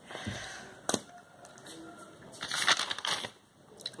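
Paper notebook being handled and shifted: paper rustling, with a sharp click about a second in and a louder rustle between two and three seconds.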